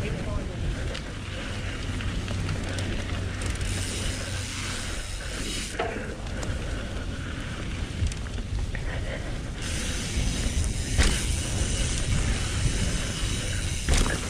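Trek Remedy 8 mountain bike's tyres rolling fast over a dirt singletrack, with wind rushing over the helmet-mounted action camera and a few sharp knocks as the bike hits bumps.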